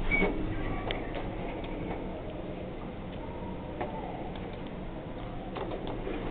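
Elevator cab at a floor: a short high beep at the start, then scattered clicks and ticks from the car and door equipment over a steady low hum, as the car doors open.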